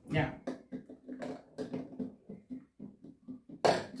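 Small plastic bottles and their clear plastic packaging being handled: a run of irregular light clicks, taps and crinkles.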